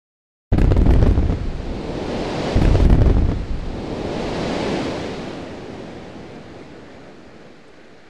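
Sound effect of a brick wall crashing apart: a sudden loud rumbling crash with crackling debris, a second crash about two and a half seconds in, then a rushing whoosh that fades away.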